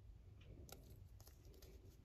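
Near silence: faint room tone with a few very faint small clicks in the second half.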